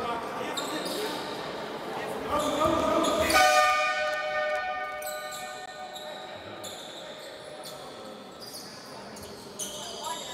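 A horn sounds about three seconds in, one steady pitch rich in overtones, then fades away over the next few seconds, echoing in a large sports hall over crowd chatter.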